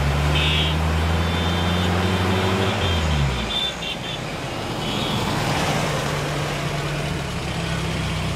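Busy city road traffic: vehicle engines running over a steady road-noise hiss, one engine note dropping and fading about three seconds in, with a few short high beeps.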